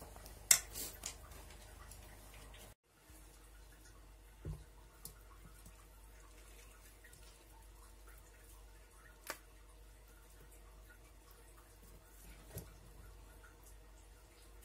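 A spoon clinking against a stainless steel pot while stirring thick chili paste, a few sharp clinks near the start. Then faint, wet handling of salted napa cabbage leaves in a plastic tub, with a few soft knocks and clicks.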